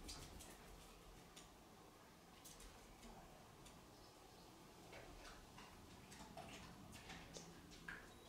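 Near silence: room tone with a few faint, irregularly spaced clicks and ticks.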